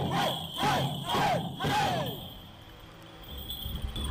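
A troupe of Yi bell dancers gives about five short shouts in unison, each rising and falling in pitch, to the beat of the dance. The copper bells in their hands jingle on each beat. The shouting stops about halfway through and the sound falls away.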